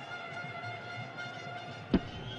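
A cricket bat striking the ball once, a single sharp crack near the end, over a steady held tone in the background.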